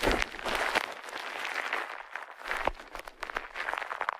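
Plastic bubble wrap crumpled and crinkled by hand right at the microphones: a dense crackling packed with sharp little snaps, easing off about halfway through, then picking up again near the end.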